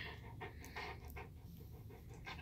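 A Cane Corso panting: quick, faint, rhythmic breaths through an open mouth.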